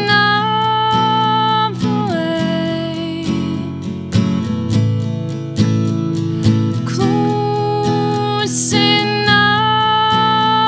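A woman singing long held notes that step down in pitch, over a strummed acoustic guitar, in a slow country-folk song.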